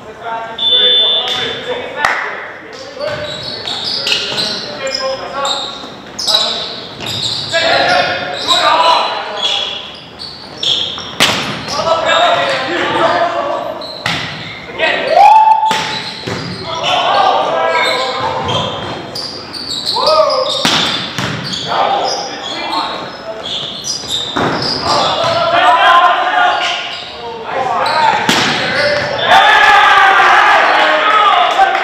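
Volleyball rally in a gymnasium: the ball is struck again and again with sharp smacks while players shout calls to each other, all echoing in the hall. A brief whistle tone sounds about a second in.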